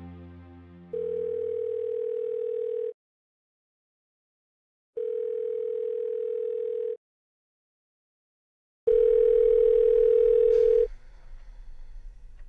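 Telephone ringing tone heard as on the line: three steady, even-pitched tones, each about two seconds long with about two seconds between them. The third is louder and cuts off near the end.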